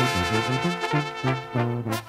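Mexican banda music: a brass band with trumpets and trombones playing over a low bass line in short repeated notes. The upper parts drop out briefly near the end.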